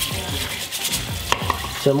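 Hot water spraying from a handheld shower head into a basin while a nail brush scrubs the teeth of a plastic comb: a steady rush of water with irregular scratchy brushing and small clicks.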